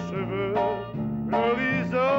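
A man singing a slow song into a microphone over instrumental backing, holding and sliding between sung notes above a stepping bass line.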